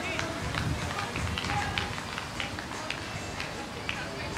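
Distant, indistinct voices of cricketers calling on the field over a steady outdoor background rumble.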